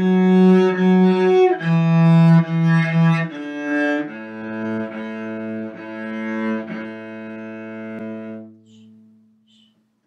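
Solo cello played with the bow: a slow beginner melody of repeated notes stepping down from F sharp through E to D. It then drops about four seconds in to a lower A, fingered on the G string, bowed several times with the last note held and dying away near the end.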